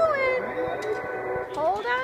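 Coin-operated kiddie ride car playing its electronic music, with steady held tones, as it starts up. A voice with rising and falling pitch sounds over it at the start and again near the end.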